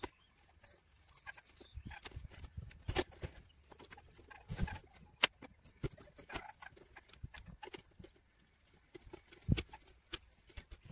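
Scattered clicks, taps and rustles of hands handling car-radio wiring and electrical tape at the dashboard, with low thumps near the middle and just before the end and a short high chirp about a second in.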